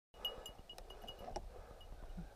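Faint metallic tinkling: a small high ring that repeats several times, with a few light clicks, over a low rumble. It starts suddenly just after the beginning.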